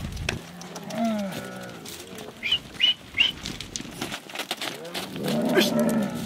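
Dromedary camels in a moving herd, one giving a long low moaning call about a second in and another near the end, with three short high chirps in between. The herder's "ush" driving call comes at the very end.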